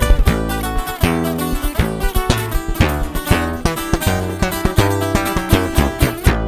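Instrumental intro of a corrido tumbado played by an acoustic group: twelve-string and six-string acoustic guitars picking quick runs over a steady acoustic bass guitar line.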